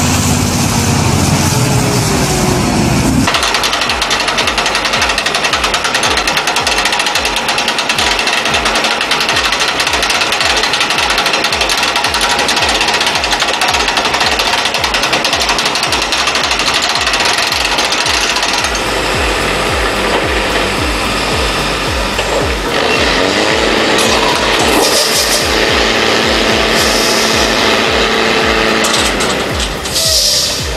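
A heavy truck's engine running, cut off abruptly about three seconds in. A loud, fast, even mechanical clatter follows, with a steady engine hum joining it from about three-quarters of the way through.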